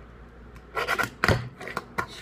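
Fingerboard clacking on a tabletop: a quick run of sharp clicks and knocks starting about a second in, as the board's tail is popped and its wheels land back on the surface.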